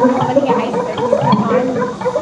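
Live electronic music played on synthesizers: a dense, busy stream of short pitched notes with a few gliding tones.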